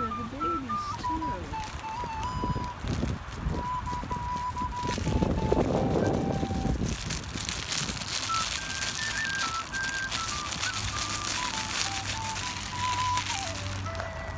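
A plastic recorder playing a slow tune of single held notes that step up and down in pitch. A short burst of rustling noise comes about five seconds in.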